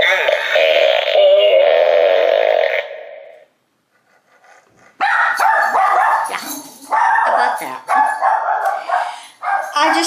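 The animated outhouse decoration's electronic sound plays on and fades out about three seconds in. After a short silence a small dog barks and whimpers several times, about once a second.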